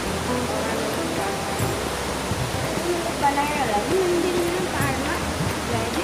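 Fast-flowing river water rushing in a steady roar of noise, with faint voices or a melody rising over it in the middle.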